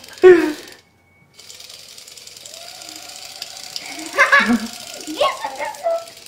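A remote-controlled i-Robot toy beetle running on a tiled floor, its motor giving a faint, steady buzz. Short spoken exclamations break in near the start and again in the second half.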